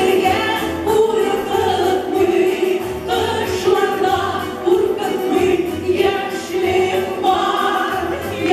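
Two women singing a Tatar-language song as a duet into microphones, over a musical accompaniment with a regular bass beat.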